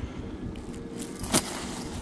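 Stainless steel chainmail rings of a box-weave chain clinking as the chain is handled, with one sharper metallic click a little over a second in.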